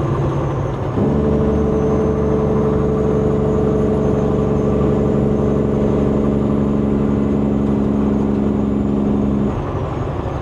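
Peterbilt 389 glider's diesel engine brake cutting in abruptly about a second in. It runs as a loud, steady-pitched exhaust note from the stacks, then is released shortly before the end, when the quieter running sound of the truck returns.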